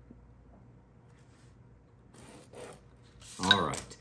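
Faint scratching of a pen drawing a line along a ruler on paper, a little over two seconds in, followed near the end by a short burst of a man's voice.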